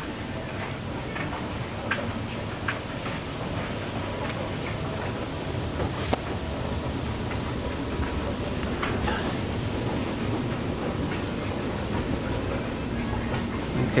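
Indoor department-store ambience: a steady low rumble with a few faint clicks, one sharper about six seconds in.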